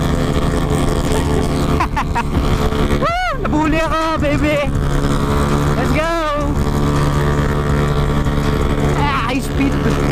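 Motor scooter engine running steadily under way, with a few short voice-like calls that rise and fall in pitch about three, four, six and nine seconds in.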